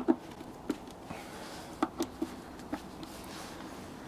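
A few light, irregular clicks and taps of a screwdriver with a T27 Torx bit working loose the screws of a Harley-Davidson Sport Glide's air cleaner cover.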